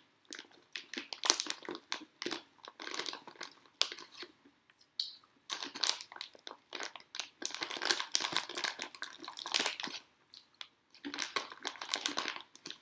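Irregular crinkling and rustling noises in quick, uneven bursts, close and fairly loud.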